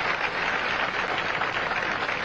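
Audience applauding steadily, a dense clatter of many hands, for a converted spare.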